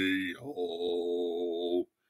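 A man singing a cappella, holding long notes: the first breaks off shortly after the start, and a second held note stops abruptly shortly before the end, leaving silence.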